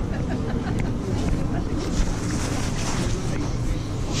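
Outdoor crowd ambience: a steady low rumble of wind on the camera microphone, with faint chatter of passers-by.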